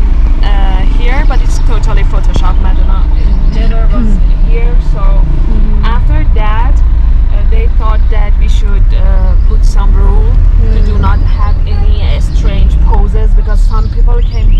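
Steady low rumble of a car heard from inside its cabin, with women's voices talking over it throughout.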